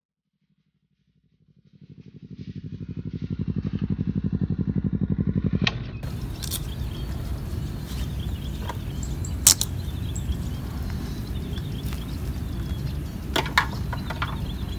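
Honda CBR250RR parallel-twin with an aftermarket exhaust approaching and growing steadily louder over about four seconds, then idling with a low, steady rumble. A few sharp clicks sound over the idle.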